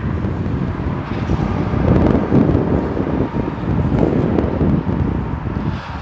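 Strong wind buffeting the microphone, a low rumble that rises and falls in gusts.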